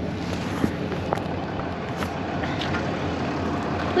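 Ram pickup truck's engine idling steadily, with a couple of small clicks in the first second or so.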